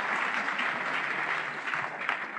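A congregation applauding, a dense patter of many hands that thins out near the end.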